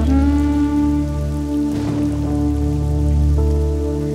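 Dramatic background score: a long held melody note over a steady low drone, with a brief soft swell a little before the middle.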